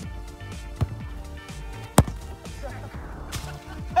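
Background music, with one sharp kick of a football about halfway through.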